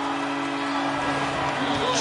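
Arena's end-of-game horn sounding a steady low tone over the noise of the crowd as time expires.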